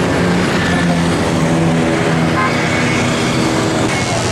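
Road traffic and vehicle engine noise heard from a vehicle in slow, congested city traffic, a steady hum with a low engine drone.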